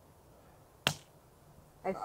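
A single sharp click a little before halfway through as a coin is tossed to decide between two trails.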